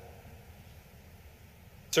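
A pause in a man's speech at a microphone: only faint room tone, with his voice starting again right at the end.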